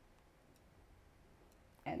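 Quiet room tone with a few faint, short clicks, then a woman's voice starts speaking near the end.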